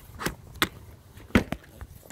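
A few short, sharp knocks and taps, the loudest a little before a second and a half in.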